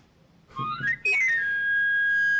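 Knife sharpener's chiflo, a small panpipe, blown in a quick rising glissando of stepped notes that ends on a high note held steadily. It is the traditional call of the itinerant knife grinder announcing he is in the street.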